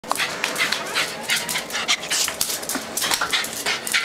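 Jack Russell Terrier panting excitedly in quick, irregular breathy puffs, two to four a second.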